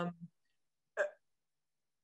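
The speaker's drawn-out 'um' trailing off, then near silence on the video-call audio, broken about a second in by one brief catch of breath.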